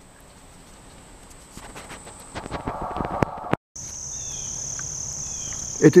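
A steady, high-pitched buzz of an insect chorus. It is faint at first, with a patch of rustling and clicks about two to three seconds in, then drops out for a moment and comes back louder and steady.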